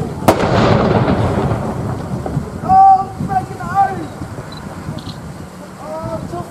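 A field gun firing a blank round about a third of a second in: one sharp bang followed by a long rumbling echo that dies away over about two seconds. Two to four seconds in, a voice calls out loudly.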